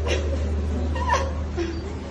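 A boy's short, high-pitched cries, a few of them, over a steady low hum.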